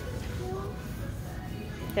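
Quiet background music with faint voices over a low steady hum.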